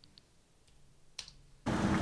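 A few faint clicks, then about one and a half seconds in a steady machinery noise with a constant hum starts suddenly: the background machine noise on the building footage's own soundtrack.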